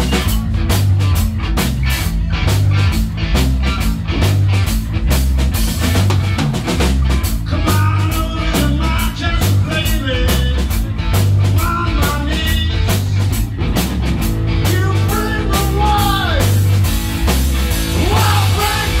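A live punk rock band playing loud and fast, with distorted electric guitars, bass and a steady pounding drum beat. A lead vocal comes in about halfway through.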